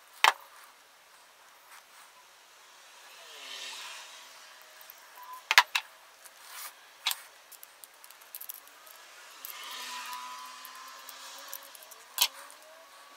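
Small metal clicks and clinks as a pocket multi-tool's pliers and a ceramic lamp socket are handled on a wooden table. There are a few sharp clacks, one just after the start, a quick double one in the middle and one a moment later, with soft handling rustle between them.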